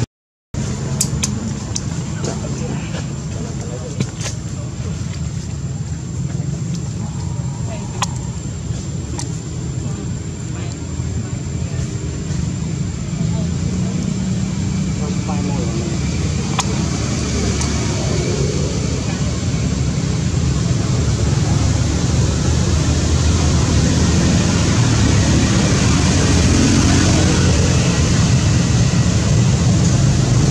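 Indistinct voices over a steady low rumble and hiss, with a few sharp clicks in the first several seconds; the rumble swells a little about halfway through.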